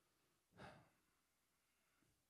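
Near silence, broken about half a second in by one short breath into a handheld microphone.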